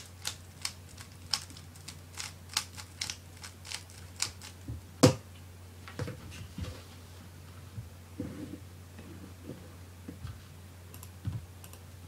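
Plastic 3x3 speedcube being turned fast, a rapid run of sharp clicks, ending about five seconds in with one loud knock as the cube is put down on the table. After that, softer knocks and handling sounds as cubes are moved about on the table.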